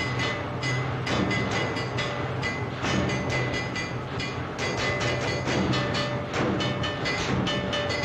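Rhythmic industrial clattering: sharp knocks several times a second over a steady low hum, with a faint high steady tone.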